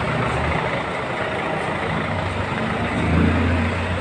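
City street traffic with a vehicle engine running nearby, its low hum growing louder about three seconds in.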